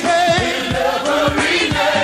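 Gospel song: a choir singing over a steady beat of low, regular strikes.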